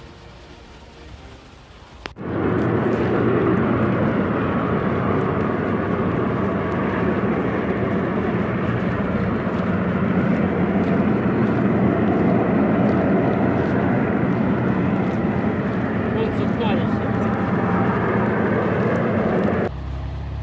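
Steady, loud running noise of a moving vehicle: an engine drone under rushing air and road noise. It cuts in suddenly about two seconds in and eases off just before the end.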